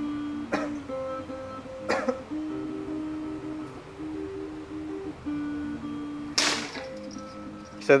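Plucked-guitar background music, cut by a few sharp knocks. The loudest, about six and a half seconds in, is a steel sword chopping into a cheap wooden mop-pole spear shaft and splitting the wood.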